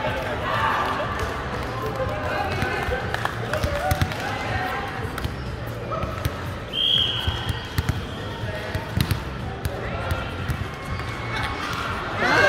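Indoor volleyball rally: a few sharp knocks of the ball being struck and hitting the court, with players' voices calling out now and then over a steady low hum. A brief high squeak comes about seven seconds in.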